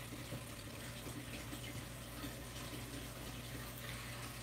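Faint, steady rush of circulating water from a running reef aquarium, with a low, even pump hum underneath.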